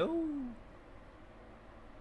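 A man's voice trailing off on a drawn-out word that falls in pitch and fades within the first half second, then quiet room tone.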